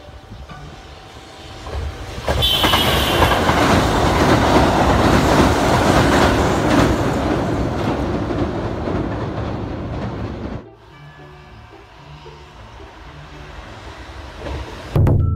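Kintetsu limited express train running across a steel girder bridge, its wheels clattering on the rails. The sound swells about two seconds in and stays loud until it cuts off suddenly near ten and a half seconds. A brief high tone sounds just after it swells.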